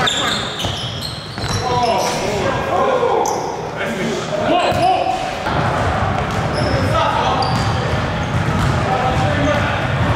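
A basketball bouncing on a hardwood gym floor during a pickup game, with players' voices echoing around the large hall.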